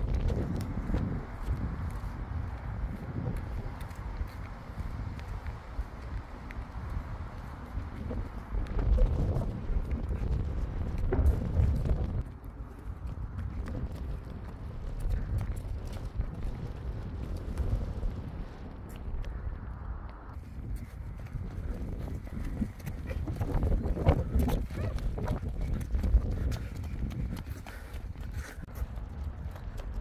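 Wind buffeting a phone microphone, a continuous uneven rumble, with the repeated thud of running footsteps on pavement.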